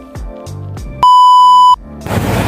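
Background music with a steady beat, cut off about a second in by a loud, steady electronic beep that lasts under a second.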